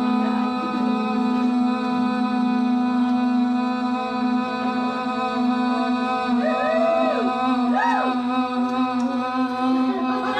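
Women's voices holding one long sung note ('Ồ...') into microphones in a breath contest to see who can sustain it longest; the note stays steady, with a couple of brief swoops up and down in pitch late on.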